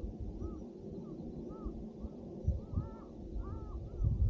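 Crows cawing: a series of short caws about every half second, a few of them doubled, over a low rumble of wind on the microphone.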